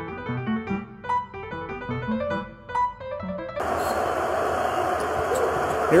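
Piano music, a few notes at a time, that stops suddenly about three and a half seconds in and gives way to the steady noise of an arena crowd at a basketball game.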